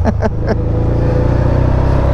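Can-Am Spyder RT's V-twin engine running steadily while riding, its note rising slightly as the trike gains speed, with road and wind noise. A short laugh comes at the start.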